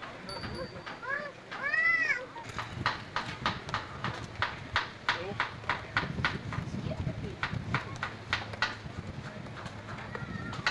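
Gull calling, a short series of arched, rising-and-falling calls about one to two and a half seconds in. After that comes a run of sharp clicks, about three a second, from a source that cannot be identified.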